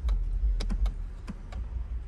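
Lexus driver's seat being adjusted with its side controls: several light clicks over a steady low rumble.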